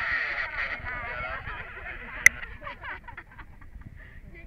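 A muffled, garbled voice coming over a two-way radio, too distorted to make out, fading toward the end, with one sharp click a little past two seconds in.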